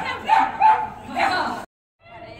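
Dog barking repeatedly while running, about four sharp high barks, cut off suddenly near the end.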